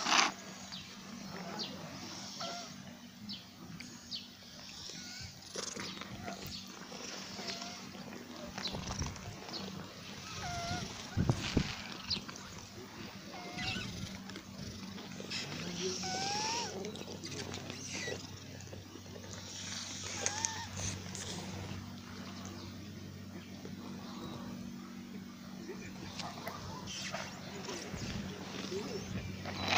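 Outdoor ambience: short chirping calls now and then over a steady low hum, with a few brief louder rustles or knocks.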